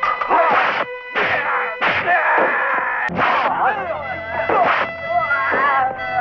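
Kung fu film fight soundtrack: a quick run of punch and impact sound effects, with fighters shouting and groaning between the blows and a held note of music underneath.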